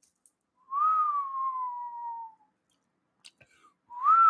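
A man whistling through pursed lips: one long note that rises briefly and then slides slowly downward, with a second short rising-and-falling whistle starting at the very end.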